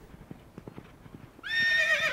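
Faint horse hoofbeats, then a horse whinnying about one and a half seconds in: a high call that starts steady and then wavers.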